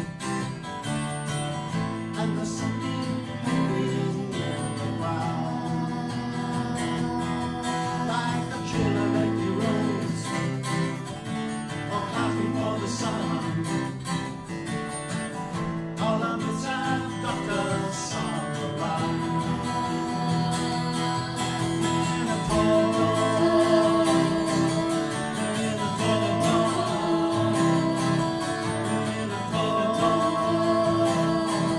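A live acoustic song: several acoustic guitars strummed and picked together, with voices singing the melody.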